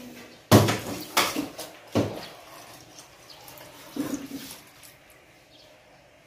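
Water poured from a small plastic measuring cup into an aluminium rice-cooker pot of uncooked rice, splashing in short bursts: three in the first two seconds and a weaker one about four seconds in.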